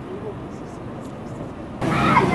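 Outdoor ambience with faint distant voices over a low steady rumble. It cuts suddenly, near the end, to louder street sound with voices and traffic.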